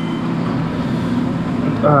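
Busy eatery's background noise: indistinct voices over a steady low hum. A short spoken 'haan' comes near the end.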